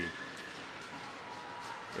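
Faint, steady ice-arena background noise, an even wash of crowd and rink sound with a faint held tone.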